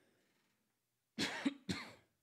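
A man coughing twice into his fist, two short coughs about half a second apart, starting a little over a second in.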